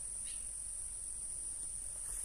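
Insects in the grass, such as crickets, giving one steady, unbroken high-pitched trill, with a faint low rumble underneath.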